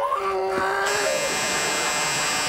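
Game-show buzzer sounding a steady, harsh electric buzz that starts about a second in and carries on past the end. It signals the switch from one pair of players to the other.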